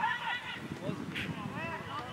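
Footballers shouting to each other during open play, several raised voices calling and overlapping.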